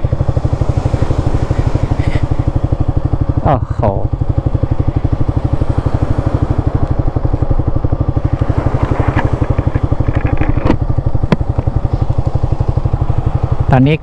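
Motorcycle engine idling steadily, a fast even pulse with no revving.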